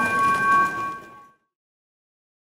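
A struck bell ringing on and fading over track and crowd noise as the leading trotter crosses the finish line, the racetrack's finish bell; the sound cuts off suddenly a little over a second in.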